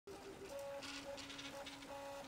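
Faint stepper-motor whine from a Makerfarm Prusa i3 3D printer as it prints, with the pitch jumping between a few steady tones every fraction of a second as the print head changes direction and speed.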